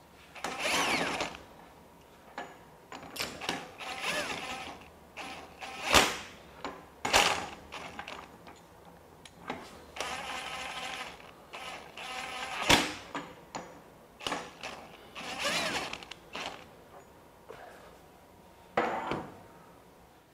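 Handling noise of a large cordless 1-inch impact wrench at a steel bolt fixture. It is a string of separate clunks, metal scrapes and rattles with two sharp clicks, one about six seconds in and one near thirteen seconds. The wrench is not heard running.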